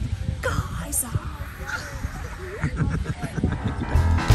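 Old Faithful geyser erupting: a steady low rush, with faint scattered voices over it.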